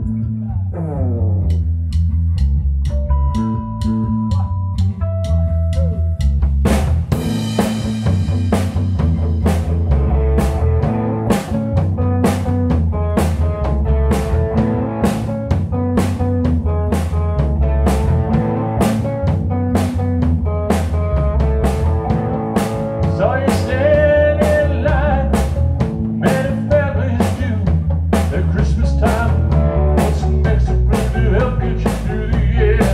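A rock band playing: a 1985 Made-in-Japan Squier Jazz Bass holds a steady bass line under electric guitar notes, and the drum kit comes in about seven seconds in with a steady beat, the full band carrying on from there.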